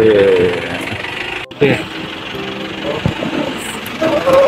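A man's voice trails off in the first half second; after a cut, a minibus engine idles steadily.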